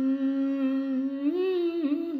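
A singer holding one long hummed note, wavering slightly and rising briefly about one and a half seconds in, over a steady instrumental drone.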